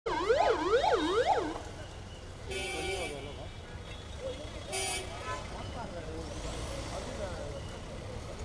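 Ambulance siren sounding a fast rising-and-falling yelp for about the first second and a half, then cutting off. Two short shrill blasts follow, over crowd voices and traffic.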